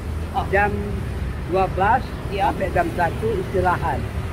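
A man and a woman talking in Indonesian, over a steady low rumble of street traffic.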